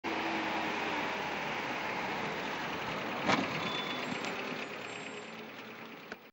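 City street traffic ambience: steady motor-vehicle noise with one sharp knock about three seconds in, fading slowly toward the end.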